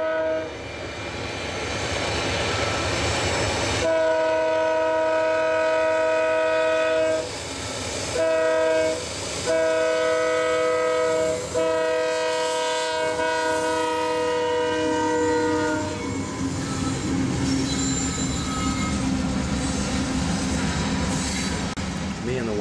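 Diesel locomotive air horn of an approaching coal train sounding the grade-crossing signal, a chord of several tones: a blast cutting off just after the start, then a long blast, a short one, and a final long one of about six seconds. After the horn stops the locomotive and cars pass the crossing with a steady engine drone and wheels clattering over the rail joints.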